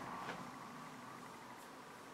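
Quiet room hiss with faint rustling of hands working through synthetic wig hair.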